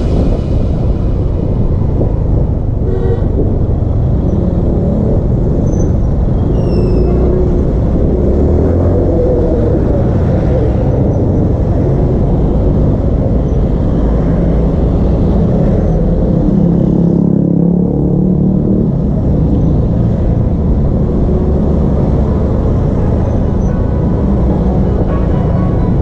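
Motorcycle engine running under way with wind noise on the onboard camera, a steady low rumble. Music comes back in near the end.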